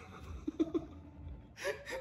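A man laughing in short gasping breaths, with a brief "yeah".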